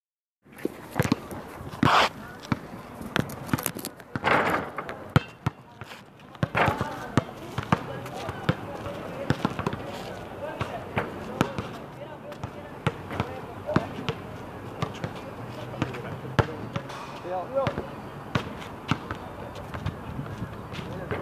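Basketballs bouncing on an outdoor court: many sharp, irregular thuds, some overlapping, with indistinct voices of people around.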